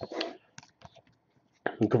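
Stiff chrome trading cards scraping and clicking against each other as a stack is thumbed through card by card: a short scrape, then a few sharp little clicks. A man's voice starts near the end.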